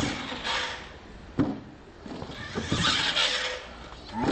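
Radio-controlled monster truck driving on a dirt track, its motor whirring and tyres scrabbling in loose dirt in two spells, with a sharp knock about one and a half seconds in and another near three seconds. Laughter is mixed in.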